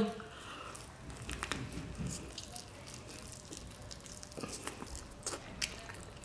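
Quiet close-up chewing and biting on jerk chicken on the bone, with scattered small wet mouth clicks.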